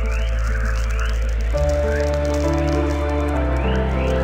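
Ambient background music: sustained chords over a low bass that changes note twice, with short rising sweeps repeating above.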